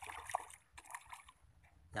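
Faint, scattered small splashes of milkfish at the water surface as they take floating feed: a pond of fish actively feeding.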